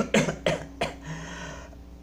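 A man coughing into his hand: four short coughs in quick succession in the first second.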